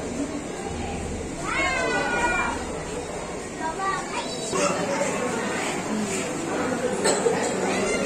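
Indistinct chatter of visitors in a crowd, with a high-pitched child's voice calling out, rising and falling, about a second and a half in and again around four seconds.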